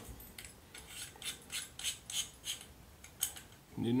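AR-15 receiver extension (buffer) tube being turned by hand into the lower receiver's threads, making a string of light metallic clicks and scrapes, about three a second.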